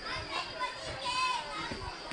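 Children's voices calling and chattering, with one louder high-pitched call about a second in.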